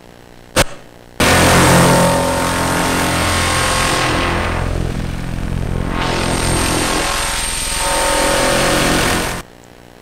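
Experimental film soundtrack played loudly from a laptop through the room's speakers: a click about half a second in, then a dense hiss over a steady low hum with a few held tones, thinning in the highs midway and cutting off suddenly near the end. It is incredibly loud.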